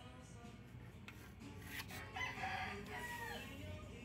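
Background music, with a loud pitched animal call starting just past two seconds in and lasting about a second and a half, its last note falling in pitch.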